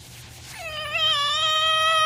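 A baby starting to cry: one long, held wail that begins about half a second in.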